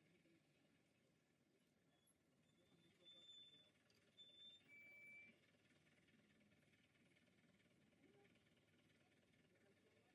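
Near silence: faint background hiss, with a few brief thin high whistles about three to five seconds in.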